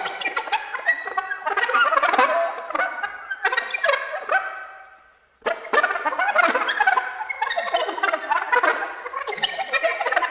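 Solo soprano saxophone in free improvisation: fast, dense flurries of notes with several tones sounding at once. The playing fades away about five seconds in, stops briefly, then starts again abruptly.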